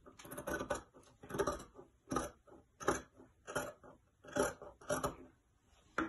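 Scissors cutting through several layers of folded fabric along a curved neckline: a steady series of about eight snips, roughly one every three-quarters of a second.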